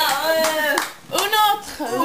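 Voices singing sustained, wavering notes, with hands clapping along.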